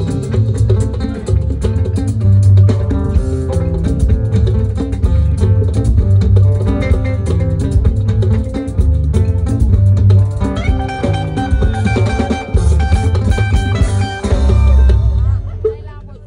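Live band music: electric bass guitar carrying a heavy bass line under guitars and a drum kit. The playing breaks off near the end.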